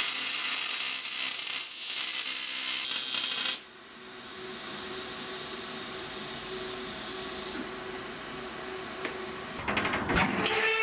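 Electric welding arc on steel: a loud, steady hiss for about three and a half seconds, then it drops to a quieter hiss that dies away about halfway through the eighth second.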